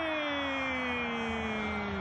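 A football commentator's long drawn-out shout celebrating the winning penalty: one held note that slides slowly down in pitch and breaks off just after two seconds.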